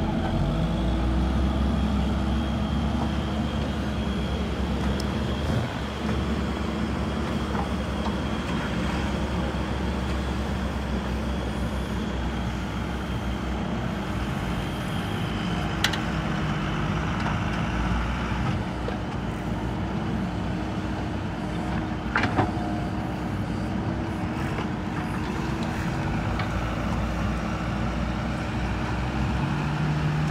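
Heavy diesel engines running steadily: a JCB backhoe loader working soil, with loaded tipper trucks moving off. A few short sharp knocks come about halfway through and again a few seconds later.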